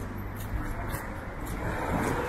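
Wet-street traffic: car tyres hissing on rain-soaked asphalt, swelling as a car approaches near the end, with light regular footsteps on wet cobblestones.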